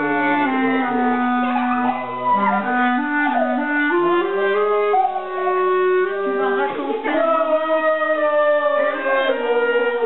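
A clarinet playing a melody, sustained notes stepping from one pitch to the next.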